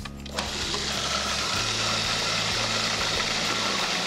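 Food processor motor running steadily, starting about half a second in, as it purées fresh raspberries with lime juice.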